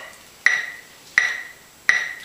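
Boss electronic metronome ticking at 84 beats per minute: three sharp, evenly spaced clicks, a little under a second apart.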